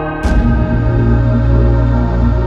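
Lo-fi hip hop music with sustained chords; a drum hit about a quarter second in is followed by a held deep bass note.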